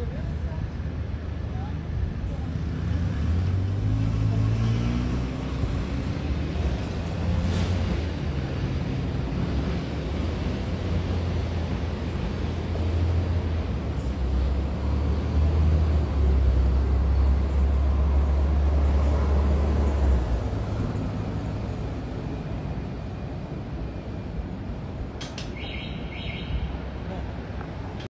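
R160B subway train running on an elevated track: a low rumble with a rising motor whine a few seconds in. It grows loudest past the middle, then drops away and fades toward the end.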